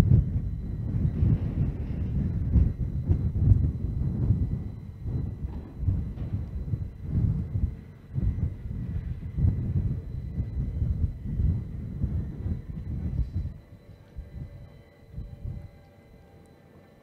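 Low, uneven outdoor rumble that swells and sags irregularly and dies down about 13 seconds in, with faint steady high tones underneath.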